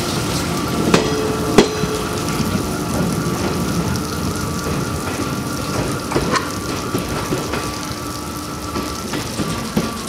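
Railway train-washing machine running: a steady hiss of water spray from the wash nozzles, with a faint machine whine, slowly dying down. Two sharp clanks come about one and one and a half seconds in.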